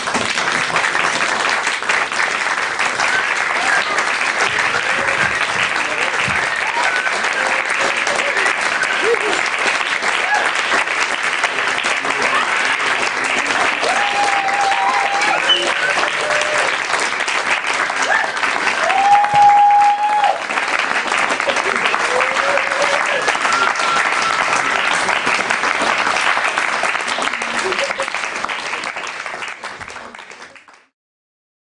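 Audience applause, steady and dense, with a few voices calling out over it. It fades away at the very end.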